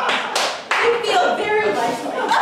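Audience clapping, with voices over it.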